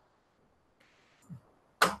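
Near silence, with a faint brief noise about a second in, then a man starts speaking near the end.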